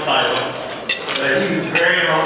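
Cutlery and plates clinking at banquet dining tables, a few sharp clinks about a second in and near the end, under a man speaking into a microphone.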